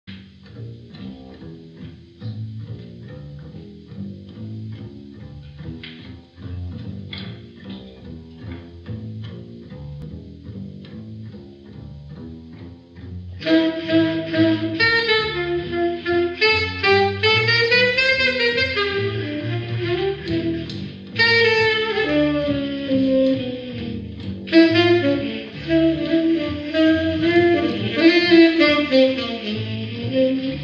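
Jazz trio of double bass, saxophone and piano playing an original tune. Plucked bass and piano open quietly with low repeated notes, then about halfway through a saxophone comes in much louder with the melody, its phrases gliding up and down.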